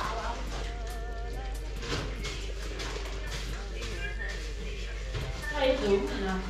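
Background music with a wavering melody line, and a short louder vocal swell near the end.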